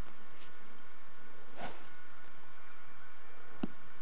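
Steady camcorder tape hiss with a faint constant hum, broken by two brief clicks: a soft one about a second and a half in and a sharper one near the end.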